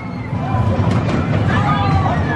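Spinning roller coaster's circular pod cars rolling past on the steel track, a steady rumble that grows louder, with riders screeching in the second half.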